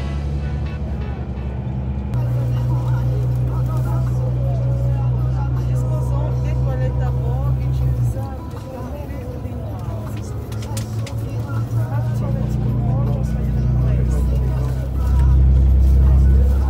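Steady low drone of a coach bus's engine heard from inside the cabin, with indistinct voices over it. The drone swells louder near the end.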